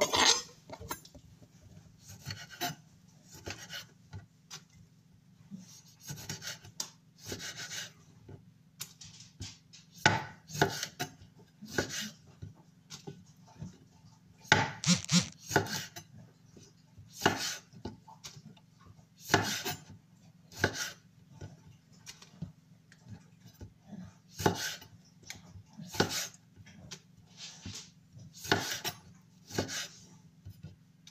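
Kitchen knife slicing cherry tomatoes on a wooden cutting board: irregular short cuts, each ending in a tap of the blade on the board, every second or two.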